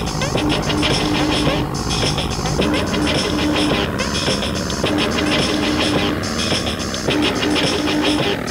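Techno club mix: a steady, loud beat with a fast, busy high ticking layer and a short synth figure that repeats about every two seconds.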